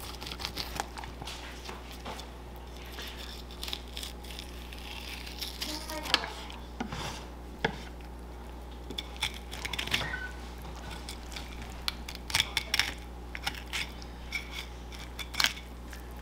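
Fillet knife cutting through a yellowtail snapper on a wooden cutting board: scattered small clicks, taps and scrapes of the blade on the board and the fish, over a steady low hum.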